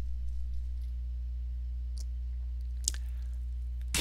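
Steady low electrical hum on the recording, with two faint clicks, about two and three seconds in.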